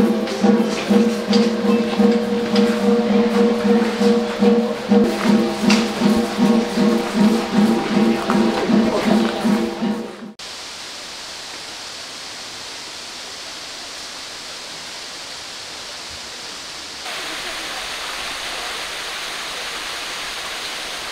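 Background music with a steady pulsing beat, cut off suddenly about halfway through. It is followed by the steady rush of falling water from a small waterfall, which grows a little louder near the end.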